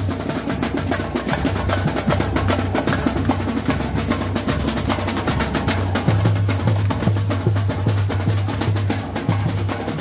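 A samba bateria playing a batucada: rapid tamborim and metal shaker strokes over a pulsing deep bass drum, dense and steady.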